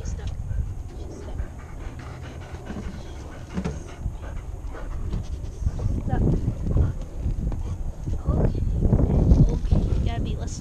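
A dog's breathing and movement heard up close through a camera strapped to its back, with its long fur and harness brushing against the camera housing; louder and busier in the second half.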